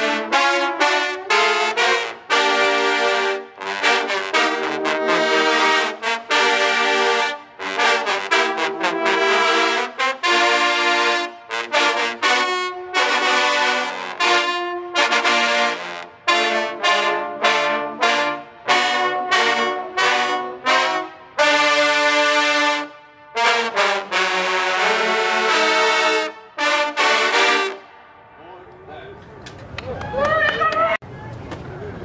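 A section of trombones playing loudly together in chords, in short separated phrases, stopping about two seconds before the end.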